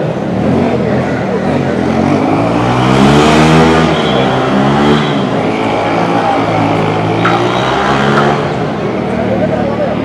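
A motor vehicle's engine running, its pitch rising and falling over several seconds, loudest about three seconds in, with people talking.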